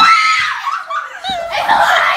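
Young women screaming and laughing: one long high-pitched scream at the start, then shrieks mixed with laughter.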